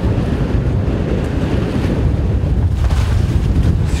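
Wind buffeting the microphone outdoors, a loud, uneven low rumble.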